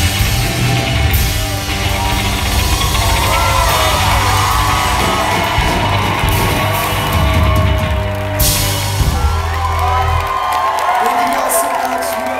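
A rock band playing live winds up its final song: the drums and crashing cymbals stop about eight seconds in, and a held low bass note rings on until about ten seconds. The crowd whoops and yells over the ending.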